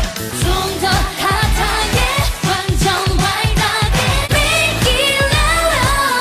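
K-pop dance-pop song performed live: women singing over a heavy bass beat.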